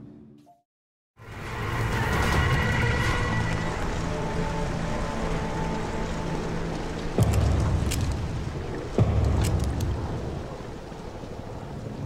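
After about a second of silence, a film soundtrack comes in: a dense, rumbling sound-effect bed mixed with score music, broken by two heavy thumps about seven and nine seconds in.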